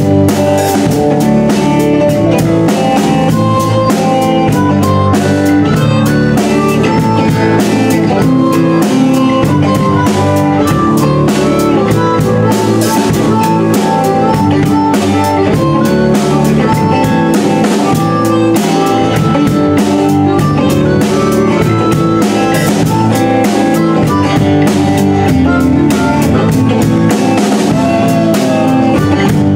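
Live band playing a rock song: a drum kit keeps a steady beat with snare, bass drum and cymbals under guitar, all loud and continuous.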